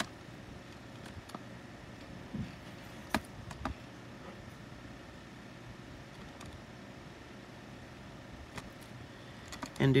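Quiet room with faint taps and ticks from a fine-tip Pigma Micron ink pen drawing on a paper tile. A few clearer clicks come around the middle, two of them close together about three seconds in.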